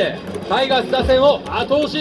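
Baseball cheering section: a stadium crowd chanting a rhythmic cheer in unison to the cheering band's trumpets, with a deep drum beat about halfway through.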